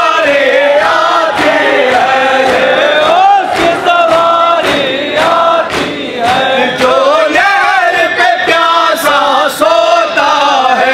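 A noha being recited: a man's mournful singing with a large crowd of men chanting along in unison, cut through now and then by sharp slaps of hands striking chests in matam.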